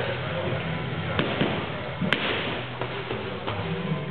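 Punches landing on a stacked column of rubber tyres: a few separate hits, the sharpest about two seconds in, over a background of gym voices.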